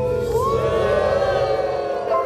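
A large group of people cheering together, many voices holding a long drawn-out shout.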